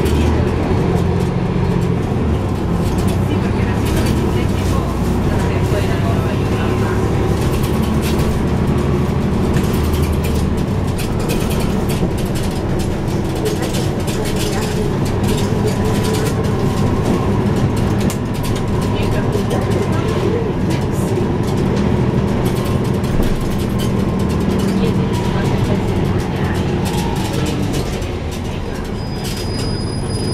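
A 2012 NABI 416.15 transit bus heard from its back seats while under way: the rear diesel engine drones steadily, its low note shifting down about ten seconds in, over road noise and interior rattles.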